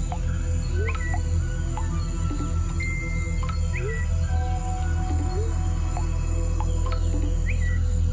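Ambient music with a steady low drone and held tones, overlaid with forest sounds: short rising bird-like chirps that recur every second or so.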